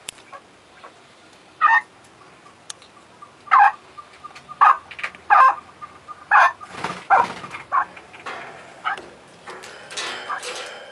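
Chukar partridges calling: a series of short, sharp call notes, one about every second from about two seconds in, coming closer together in the second half.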